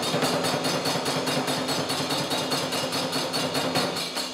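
Nanbu kagura accompaniment: small hand cymbals (kane) struck in a fast, even beat of several strokes a second, over a drum.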